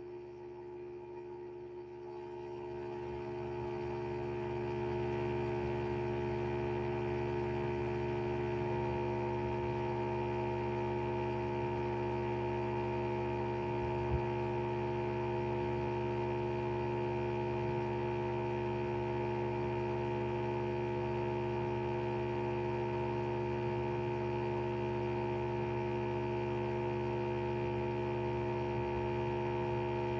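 Steady electrical hum on the video call's audio, several held tones together, swelling over the first few seconds and then holding level; described as loud.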